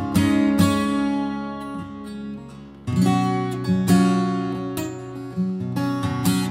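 Gibson acoustic guitar in double drop D tuned down a half step (Db Ab Db Gb Bb Db) strummed, its low chords ringing with a very loose kind of sound. A chord rings out and fades over the first few seconds, then fresh strums come in near the middle and again later.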